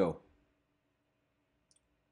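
A man's narrating voice finishes a word at the start, then near silence: a faint steady hum, with one tiny click near the end.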